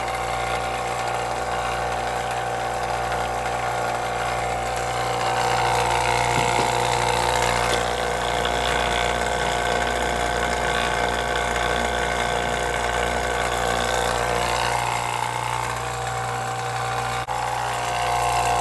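HVAC vacuum pump running steadily while it evacuates the refrigeration system: a continuous motor hum with a steady whine over it.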